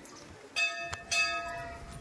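A metal bell struck twice, about half a second apart, each stroke ringing on in several steady tones before fading.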